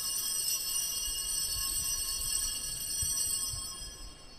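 Altar bells (a cluster of small Sanctus bells) rung continuously with a bright jingling shimmer, signalling the elevation of the chalice at the consecration; the ringing fades away near the end.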